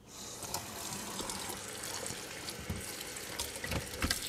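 Kitchen faucet running, a steady stream of water splashing into a plastic colander in a stainless steel sink, with a few soft knocks near the end.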